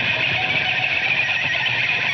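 Live rock band playing a dense instrumental passage led by electric guitars, with bass and drums underneath.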